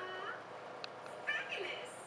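Voice from a television programme playing through a CRT TV's speaker, in short gliding, high-pitched phrases near the start and again past the middle.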